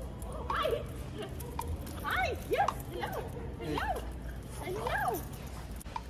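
About six short, high-pitched vocal calls, each sliding up and then down in pitch, over a steady low hum.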